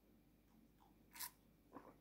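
Near silence, broken by a short faint mouth sound from sipping coffee from a mug about a second in, and a smaller one just before the end.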